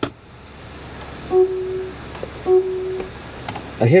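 A steady humming from the 2023 Lexus RX 350h's ventilated front seats, their fans running on both sides, with two identical electronic beeps about a second apart standing out over it.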